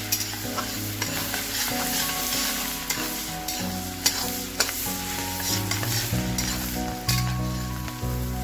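Chopped onions sizzling as they fry in hot butter and oil in a kadhai, stirred with a spatula that knocks and scrapes against the pan every second or so.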